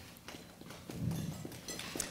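Sparse, irregular light clicks and taps, with a faint low murmur about a second in.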